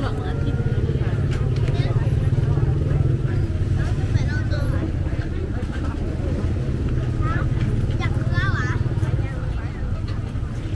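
Crowd of people talking, with snatches of nearby voices coming and going over a steady low rumble.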